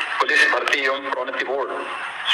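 A man speaking in Hindi into microphones.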